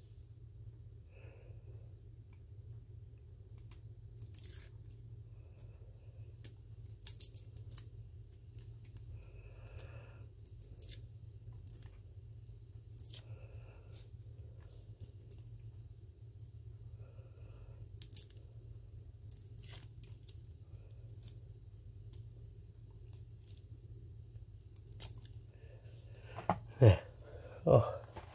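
Garlic cloves being peeled by hand: faint, scattered crackles and ticks of the dry papery skin being picked and torn off, over a steady low hum.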